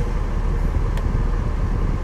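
Motorhome engine idling with a steady low rumble, and one light click about halfway through.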